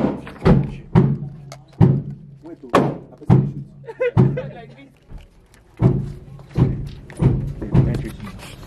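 Gunshots on an indoor shooting range: about ten sharp shots at uneven spacing, each with a short echoing tail off the hard walls.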